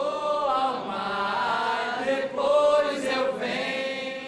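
A group of people chanting together with their arms linked, holding long drawn-out notes in two phrases, the second starting just after two seconds in.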